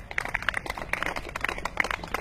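Quick hand clapping from several spectators, many sharp claps to the second, the kind of clapping that urges on a javelin thrower's run-up.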